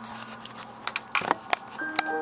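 Handling knocks and clicks as the camera is moved. Near the end, an instrumental keyboard backing track of the hymn begins with held notes.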